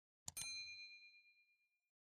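Mouse-click sound effect, two quick clicks, followed by a bright notification-bell ding that rings out and fades over about a second and a half.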